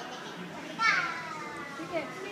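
A young child's voice: one high, drawn-out call that falls steadily in pitch, starting a little under a second in and lasting about a second.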